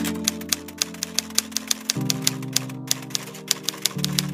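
Typewriter-style typing sound effect: a quick run of key clicks, about four to five a second, as the headline text types out. Under it, background music holds sustained chords that shift about two seconds in.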